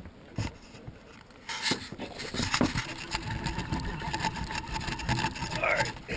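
A fishing reel rasping steadily while a hooked catfish is fought on a bent rod. It starts about a second and a half in.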